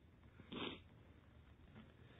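Mostly near silence, with one short intake of breath through the nose or mouth about half a second in.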